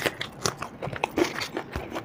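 Someone biting and chewing deep-fried, battered green chilli fritters (mirchi pakoda), giving a string of irregular crisp crunches.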